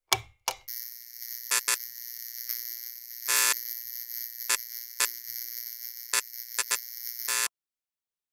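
Channel logo intro sound effect: a steady high electric hum broken by sharp crackling zaps at irregular moments, with a longer burst about three and a half seconds in. It opens with two quick hits and cuts off suddenly just before the end.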